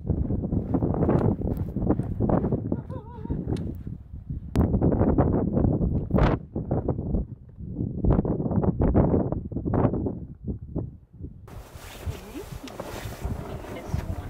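Strong gusty wind buffeting the microphone, loud and uneven, coming in blasts. About eleven and a half seconds in, it gives way to a steadier, hissing rush of wind.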